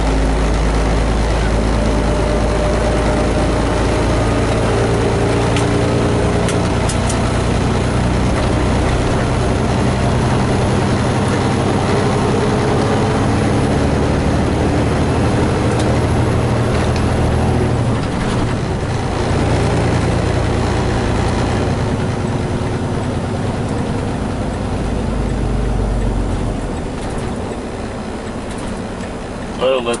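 Semi-truck diesel engine heard from inside the cab as the truck slows and is downshifted, the engine note stepping in pitch between gears. It eases off around eighteen seconds in and drops quieter after about twenty-six seconds as the truck comes down to low speed.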